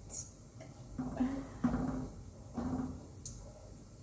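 A woman humming three short notes at a steady pitch, with a light click near the start and another a little after three seconds in.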